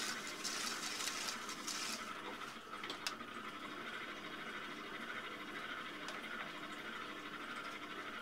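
Loop trimming tool scraping leather-hard clay off the foot of an upturned kyusu teapot on a spinning potter's wheel, a dry hissing scrape that eases off about two seconds in, over the steady hum of the wheel. A single sharp click about three seconds in.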